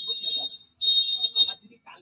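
A voice in two short phrases, each carrying a shrill, steady high tone that breaks off with it.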